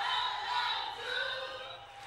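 Live concert audio, fairly faint: a large audience in a hall singing and cheering, with the band's music underneath.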